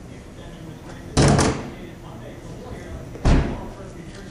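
Two loud slams from a 2011 Chevrolet Cruze's body, about two seconds apart, each a short deep thud.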